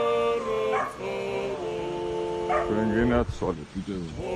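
Male voices singing Georgian polyphony a cappella: held chords in several parts that step down in pitch together, with a wavering ornament in the third second and a short break near the end before the next chord comes in.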